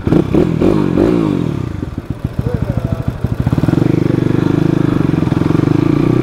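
Dirt bike engine revved in quick blips, then idling with a slow, uneven putter, before settling into a steady, stronger note as the bike pulls away.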